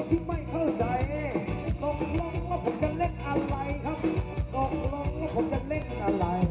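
Live band playing upbeat Thai ramwong dance music: electric instruments and a melody line over a steady drum beat.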